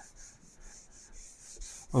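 A felt whiteboard duster rubbing marker ink off a whiteboard: a faint, dry rubbing in quick back-and-forth strokes.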